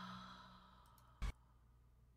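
A woman's long breathy sigh trailing away, over the last held low note of the music fading out. A single short click follows about a second in.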